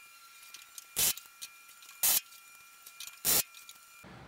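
Pneumatic rivet gun firing three short bursts about a second apart, driving solid rivets into the aluminium bottom wing skin of a Van's RV-10.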